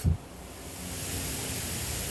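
A steady hiss with no clear source, strongest in the high frequencies, swelling gradually over the first second or so.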